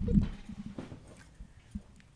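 A few soft thumps and knocks as a person sits down into a leather office chair at a desk, with a single short click near the end.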